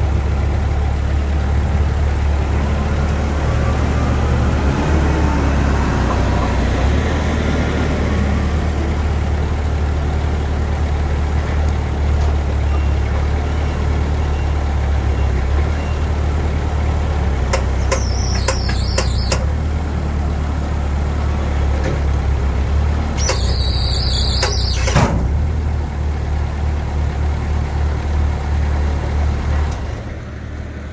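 Moffett M55 truck-mounted forklift's engine running steadily with a deep drone while the machine lowers itself from the trailer onto its wheels. Two short bursts of high hissing come about two thirds of the way through.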